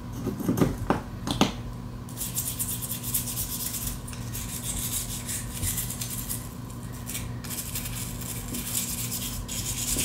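Small bristle brush scrubbing the inside of a plastic key fob shell: a scratchy brushing sound that comes in long runs with brief breaks, after a few light clicks of the plastic being handled in the first second or so.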